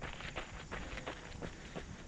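Running footsteps on a gravel trail: a steady rhythm of light footfalls, with low rumble underneath.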